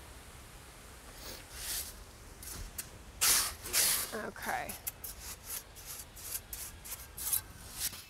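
Shovel scooping and dumping wet stone dust (stone dust mixed with water): short gritty scrapes and swishes, coming thick and fast in the second half.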